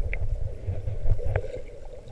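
Underwater water noise of swimmers moving, heard muffled through a waterproof camera housing: an uneven low rumble with a few short clicks.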